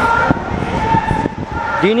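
Road traffic noise with a few brief steady high tones and knocks from handling close to the microphone; a man starts speaking near the end.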